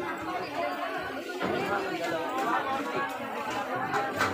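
Busy market crowd: many overlapping voices of shoppers and vendors talking at once, none standing out.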